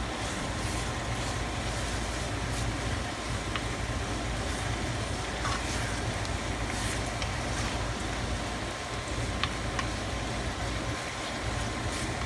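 Meat, onions and tomato sauce sizzling in a hot frying pan as they are stirred with a wooden spoon, with a few light taps and scrapes of the spoon, over a steady low hum.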